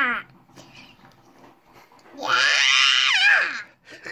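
A young boy's high-pitched, playful squeal, one long held cry of about a second and a half about two seconds in, dropping in pitch at its end; the tail of an earlier squeal ends just at the start.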